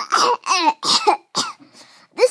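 A child coughing, a quick run of about four loud coughs followed by a faint one near the end.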